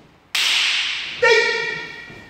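A kung fu practitioner's sharp slap or snap, echoing in a large hall, followed a little after a second by a short, high-pitched shout.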